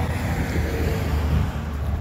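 Steady low rumble with an even hiss: outdoor background noise.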